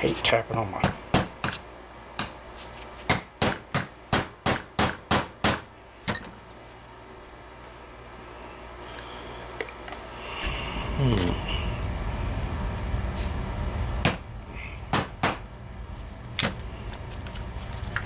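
A string of sharp metal taps, a small hammer knocking against the stuck, corroded float pin of an outboard carburetor. The taps come quick and even, about three a second, for the first few seconds, with a few more near the end. A low rumble swells in the middle.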